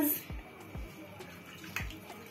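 Wet potato slices being lifted by hand out of a bowl of water, with light splashing and dripping and a few soft thumps.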